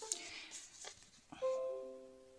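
Soft background music: a few held, plucked-sounding notes come in one after another about one and a half seconds in.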